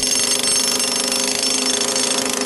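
Jackhammer breaking through a concrete slab: a loud, steady, rapid hammering.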